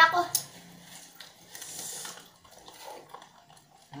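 Soft rustling and crinkling of a small plastic sauce sachet being opened and squeezed, with a paper tissue being handled. There is a brief hiss-like rustle about halfway through.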